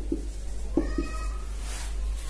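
Dry-erase marker squeaking on a whiteboard while writing, with a few short squeaks over a steady low electrical hum.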